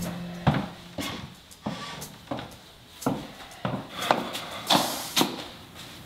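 Footsteps going down hardwood stairs: about nine steady steps, roughly two a second. The tail of background music dies away at the start.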